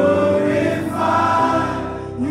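A choir of voices singing a gospel worship song together, holding long notes.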